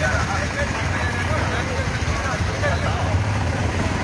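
Indistinct voices talking a little way off, over a steady low rumble.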